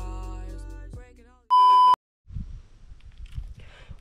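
A single loud, steady beep tone about half a second long near the middle, after the last second of intro music fades out. After a brief silence a low, uneven rumble follows.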